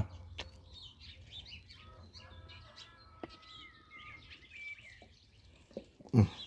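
Faint birds chirping and whistling, many short calls scattered throughout. A low hum fades away over the first two to three seconds.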